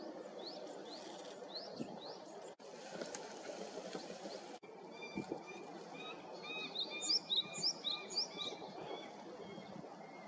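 Birds chirping over a steady low background rumble: a few quick rising chirps in the first two seconds, then from about five seconds in a busy run of short repeated calls, loudest between seven and nine seconds. Between about two and a half and four and a half seconds there is a stretch of brighter hiss, cut off abruptly at both ends.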